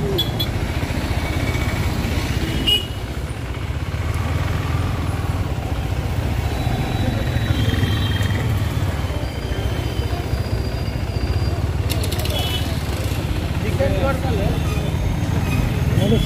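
KTM Duke 390's single-cylinder engine running steadily at low speed in slow traffic. Snatches of voices from people close by come and go over it.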